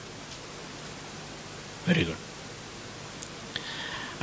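Steady background hiss from the microphone and recording in a pause between a man's phrases, broken by one short spoken word about halfway through.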